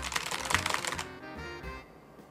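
Fast typing on a computer keyboard: a quick run of keystrokes that stops about a second in, with background music underneath.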